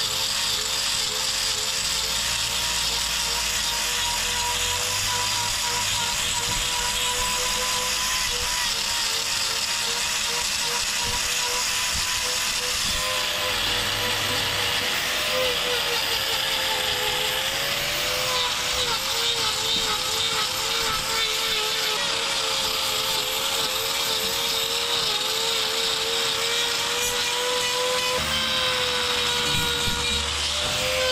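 Hand-held angle grinder with a trimming disc grinding down a cow's hoof horn: a steady motor whine that wavers and dips in pitch as the disc bites into the claw, mostly in the middle stretch, over a continuous hiss of horn being ground away. It is taking down built-up sole on a claw that is wearing unevenly.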